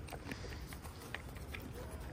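A deer eating sliced apples and nuts from a steel bowl: faint, scattered crunches and clicks as it chews and noses through the food.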